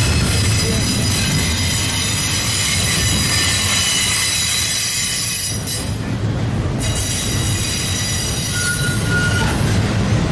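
Double-stack intermodal freight cars rolling through a tight curve, their wheel flanges squealing in several steady high tones over the rumble of wheels on rail. The squeal dies away about halfway through and returns more weakly near the end.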